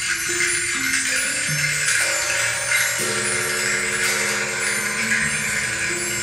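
Recorded music played back through a pair of Monitor Audio Studio 2 stand-mounted speakers driven by an Arcam Diva A80 amplifier. Sustained low notes shift every second or so under a steady, hissing high percussion.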